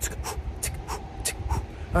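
A dog panting, quick short breaths about three a second, with a low wind rumble on the microphone.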